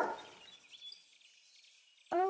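The tail of a dog bark at the very start, fading fast, then a quiet pause with faint high chirping in the background.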